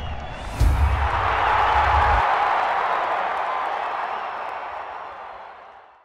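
Sports-channel intro sting: a deep bass hit with a swell of crowd-like cheering noise that peaks about two seconds in, then fades away.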